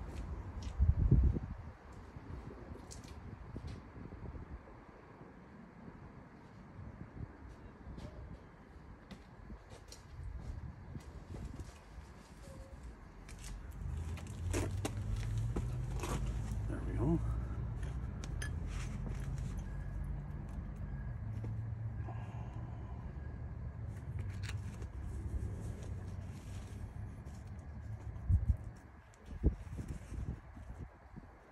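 Light metal clinks and knocks of a front-wheel spindle nut and small hub parts being removed by hand and set down, with louder knocks about a second in and near the end. A low steady engine-like hum runs underneath from about halfway through until near the end.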